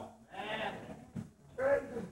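A voice making a drawn-out, wavering exclamation, then a short spoken 'yeah' near the end.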